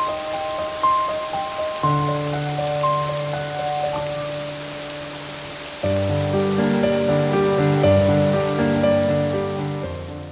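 Soft instrumental music, single melodic notes over held low chords, with the steady hiss of falling rain beneath it; a fuller, louder chord comes in about six seconds in.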